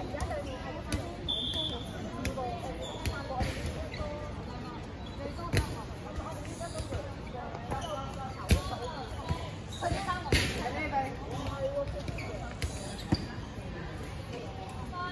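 Dodgeballs hitting the hard court during play: a scatter of short, sharp impacts, the loudest about eight and a half seconds in, over players' voices and calls.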